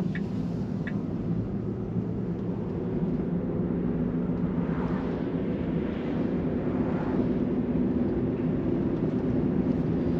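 Road and tyre noise inside the cabin of a Tesla electric car driving along, a steady hum that grows slightly louder as it picks up speed; an oncoming car passes about six seconds in.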